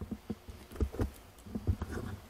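Handling noise of a handheld camera being turned around: a quick, irregular run of soft low thumps and rubs as fingers shift their grip on the camera body.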